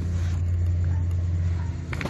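A steady low mechanical hum from a running machine, unchanging throughout.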